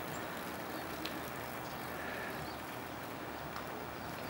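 Steady outdoor background noise, with one soft click about a second in.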